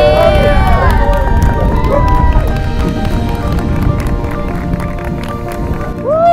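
Wedding guests cheering and clapping, with whoops in the first couple of seconds, over background music. Wind rumbles on the microphone.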